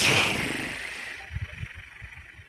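A sudden rush of hissing noise on a participant's headset microphone that fades away steadily over about two seconds, with a few low thumps near the middle.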